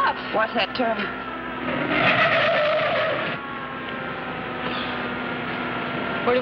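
Car driving at speed, its engine running steadily, with a screech of tyres skidding for over a second about two seconds in.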